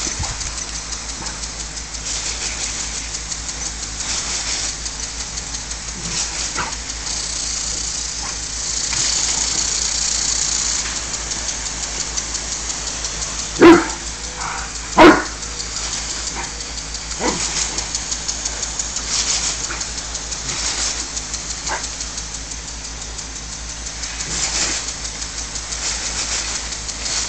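A Rottweiler barks twice, loudly, about a second and a half apart near the middle. A lawn sprinkler keeps up a steady spray of water underneath, with a fast flutter.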